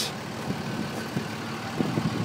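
Diesel truck engine idling steadily, with a few faint ticks over it.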